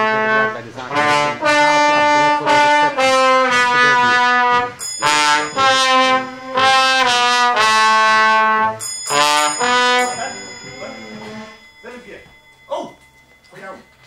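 Slide trombone played solo: a string of held notes, each lasting about half a second to a second, for about ten seconds. Then the playing stops and only faint sounds remain.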